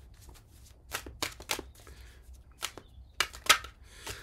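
A deck of oracle cards being shuffled by hand: a string of short, crisp, irregular card snaps, the loudest a little past three and a half seconds in.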